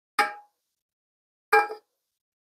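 Two clangs of metal cookware about a second and a half apart, each ringing briefly: a saucepan knocking against a pot as frozen molokhia is scraped out of it into the broth.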